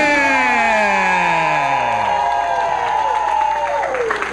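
Ring announcer's long, drawn-out call of a wrestler's name through a hand microphone, the voice held for several seconds and sliding slowly down in pitch before dropping off near the end, with the crowd cheering under it.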